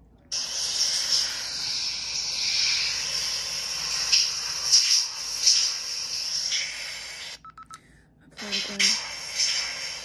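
Playback through a small digital voice recorder's speaker of a recording made in a shower: the steady hiss of running shower water. It stops for about a second after 7 s, with a brief beep from the recorder, then the water hiss resumes.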